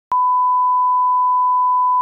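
Steady 1 kHz reference test tone played over colour bars, starting abruptly just after the start with a click.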